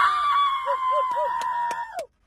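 A girl's voice holding one long, high-pitched shrieking note that cuts off abruptly at the end. Another voice makes a few short rising-and-falling sounds underneath it.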